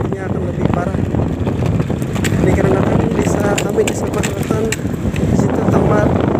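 Honda Scoopy scooter being ridden at low speed, its small engine running under a steady rumble of wind buffeting the microphone.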